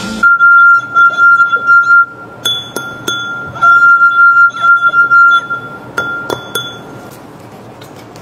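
Wine glass partly filled with water, sung by a wet fingertip rubbed around its rim: a steady high ringing tone held for about two seconds, then again for about two seconds after a short break. A few short glassy pings fall between and after the tones.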